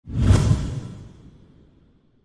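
An editing whoosh sound effect with a deep boom underneath. It hits suddenly and fades away over about a second and a half.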